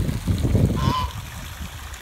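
A goose honks once, about a second in, over the rush of water running into a pond.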